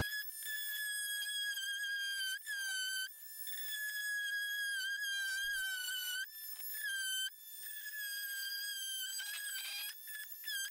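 Corded Dremel Multi-Max oscillating multi-tool whining as it cuts along a seam of a vinyl soffit panel. It is a high steady whine whose pitch sags slightly at moments as the blade bites, and it goes quieter twice, about three and seven seconds in.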